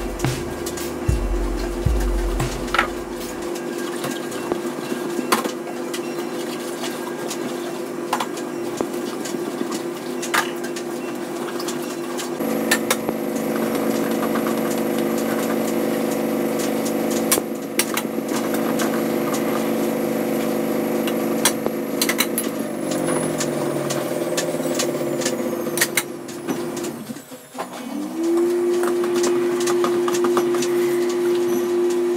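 Dishes being washed by hand at a kitchen sink: scattered clinks of ceramic cups and plates over a steady hum. The hum slides lower in pitch past the middle, cuts out briefly near the end and comes back with a rising tone.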